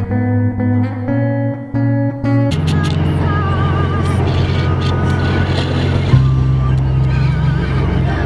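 Music: plucked guitar notes, then about two and a half seconds in a fuller, louder arrangement joins, with a deep held bass note and a wavering melody line over it.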